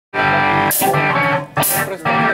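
Live rock band playing: electric guitar chords held and struck again, with two sharp hits from the band near the middle and end.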